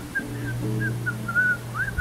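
Acoustic guitar playing, with a low note held under a whistled melody of short notes and little upward slides.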